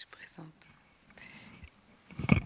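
Faint, whispered voices near the table microphones, with a small click at the start.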